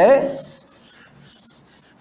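A board eraser rubbing across a chalkboard in quick back-and-forth strokes, wiping off chalk writing.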